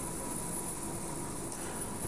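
Steady hum and hiss of running laboratory equipment and ventilation, with faint steady whining tones above it.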